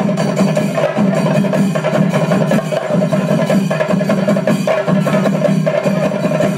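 A large chenda melam ensemble: many chenda drums beaten rapidly with sticks in a loud, dense, unbroken rhythm.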